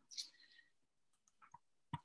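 Near silence, with a soft hiss near the start and a few faint clicks, the last just before speech resumes.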